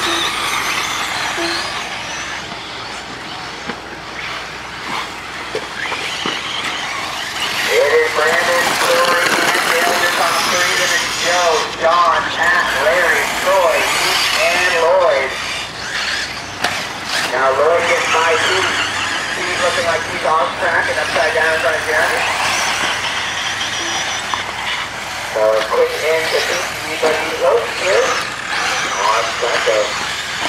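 Electric 1/8-scale RC buggy motors whining as the cars race, the pitch rising and falling again and again as they accelerate and brake, over a steady bed of track noise.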